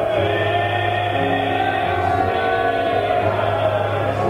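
Gospel singing with keyboard accompaniment, the voices and a low bass note held long and steady.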